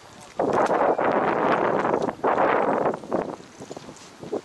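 Wind buffeting the microphone in two loud gusts, the first starting about half a second in, the second ending about three seconds in.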